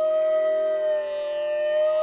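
Hotchiku, an end-blown bamboo flute, playing one long held note that sags slightly in pitch about halfway through and comes back up, over a fainter, lower sustained drone.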